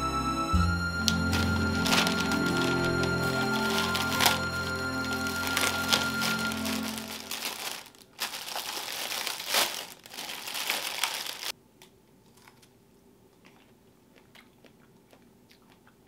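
Background music that stops about halfway through, then a few seconds of crinkling and tearing plastic film as a wrapped punnet of strawberries is opened by hand, ending in quiet room tone.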